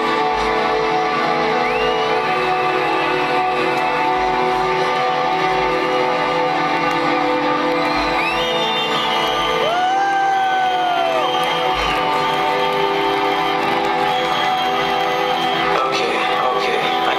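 Electronic dance music from a live DJ set playing loud over the festival sound system, with held synth chords and deep bass. Crowd whoops and whistles rise over it now and then, the loudest a long 'woo' about ten seconds in.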